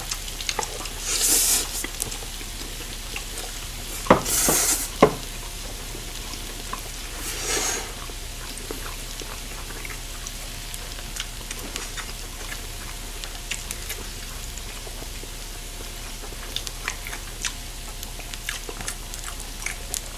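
Pork belly sizzling steadily on a hot grill plate, with three loud noodle slurps, about a second in, around four seconds in and near eight seconds, then lighter chewing clicks.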